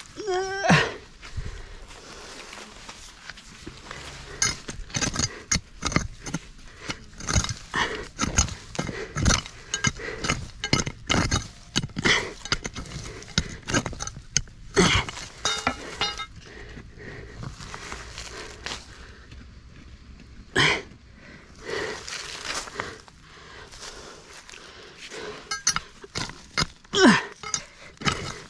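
A thin blue digging bar scraping and knocking against rock and stony soil as it is prodded into a crevice, with rapid irregular clinks and scrapes that are densest in the middle. Two short falling squeaks stand out, one near the start and one about two-thirds of the way in.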